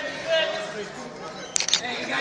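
Voices of people standing around talking, with a quick cluster of sharp clicks a little past one and a half seconds in.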